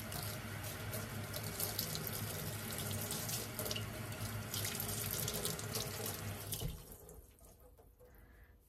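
Kitchen tap running into a stainless steel sink, the stream splashing over gloved hands as they rinse the faucet. The water cuts off suddenly a little before the end.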